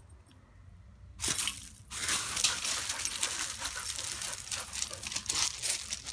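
Dogs scuffling and moving about on loose gravel: paws crunching and scraping the stones, with small clinks, likely from collar hardware. A short burst comes about a second in, then a busy run from two seconds in.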